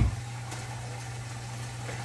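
A brief knock at the very start, then a steady low hum.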